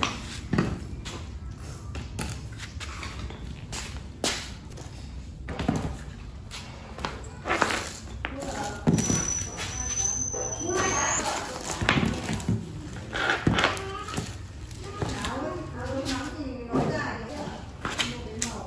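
Sealed lead-acid batteries being set down one after another on a tiled floor: a series of knocks and thuds, with voices talking in the second half.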